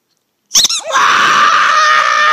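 A person screaming as the small dog lunges at the white plush glove: a few short, sharp cries about half a second in, then one loud, high-pitched scream held at a steady pitch.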